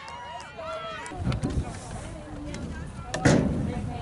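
Faint, distant shouting of players on an outdoor lacrosse field, with a single sharp thud a little past three seconds in.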